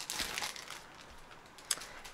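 Plastic packaging crinkling as a sticker book is pulled out of it, strongest in the first second, then fainter rustling.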